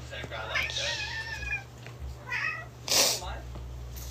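A cat meowing: a long, wavering high meow about half a second in and a shorter one a little after two seconds, then a brief breathy burst just before three seconds.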